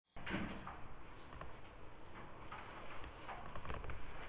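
Faint irregular clicks and small knocks over steady background hiss, from a computer mouse or touchpad being clicked.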